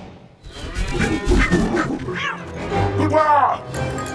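Cartoon sound effects over light background music, ending with a short animal-like vocal call about three seconds in whose pitch rises and falls.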